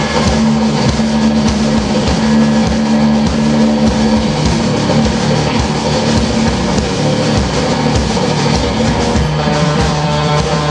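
Live instrumental surf rock band playing: twangy electric guitar, bass and drum kit. The playing turns busier and noisier right at the start and eases back about nine seconds in.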